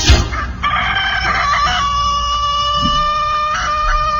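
Rooster crowing, a recorded crow played on a radio broadcast: one long drawn-out call that begins about half a second in and holds a steady note.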